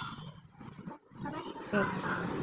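Faint, indistinct children's voices, dipping to a brief lull about a second in before a voice rises again near the end.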